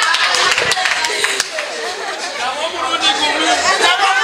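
A crowd of party guests chattering and calling out over one another, with a few scattered hand claps in the first second or so.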